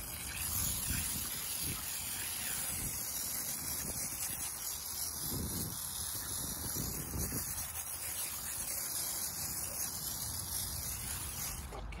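IK Foamer hand-pump pressurized foam sprayer hissing steadily as it sprays wheel-cleaner foam from its wand onto a car wheel, cutting off near the end.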